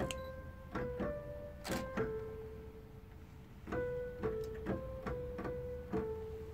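Electronic keyboard playing a short melody of single sustained notes, one at a time. There is a brief lull in the middle before a second phrase.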